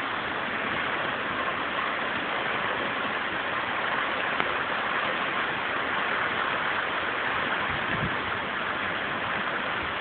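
Heavy rain in a hurricane downpour, a steady, even hiss of rain falling on the pavement and trees. A brief low thump sounds about eight seconds in.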